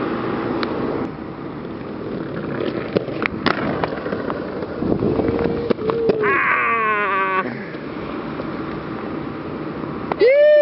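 Inline skates rolling along a brick ledge and paving: a steady gritty wheel noise with sharp knocks from the skates a few times. From about five seconds in, a drawn-out call falls in pitch over it.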